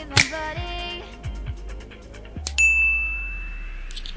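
Editing sound effects: a sharp hit just after the start, a slow rising sweep, and a bright bell-like ding about two and a half seconds in that rings steadily for over a second.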